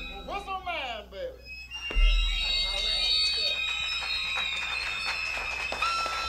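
Whistles sounding as the music ends. First a few downward-sliding whistle notes, then a low thump about two seconds in as a held, high, alarm-like whistle tone starts and keeps sounding.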